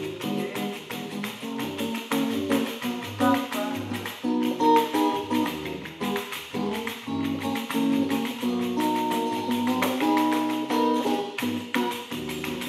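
Nylon-string acoustic guitar strumming bossa nova chords, with a pandeiro tambourine tapped and jingled by hand in a steady samba rhythm alongside.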